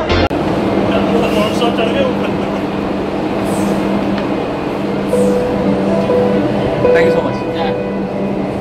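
Steady low hum and rumble of a docked cargo ship's running machinery, heard on deck. Background music comes in about five seconds in.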